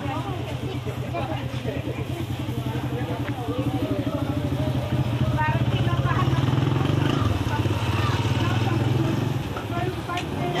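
A small engine running steadily with an even low pulse, louder for a few seconds in the middle, under nearby voices.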